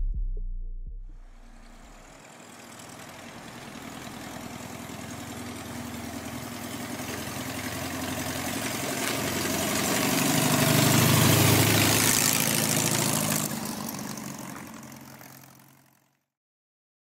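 The trap beat's deep bass dies away in the first two seconds, then a car engine running, swelling slowly to its loudest about eleven seconds in and fading out near the end.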